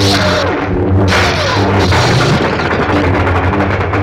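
Film sound effects of lightsabers humming and clashing in a duel, with music behind them.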